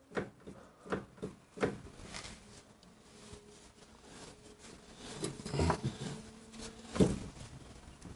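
Scattered light clicks and knocks of hands working at a motorcycle's rear wheel and brake as the freshly pumped-up rear brake is tested, with a sharper click near the end. A faint steady hum sits under the middle of it.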